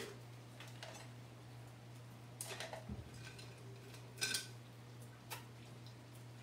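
Light clicks and clinks of paintbrushes being handled among paint tubes and tools on a table while a thinner brush is chosen. There are a few separate taps, the loudest about four seconds in, over a steady low hum.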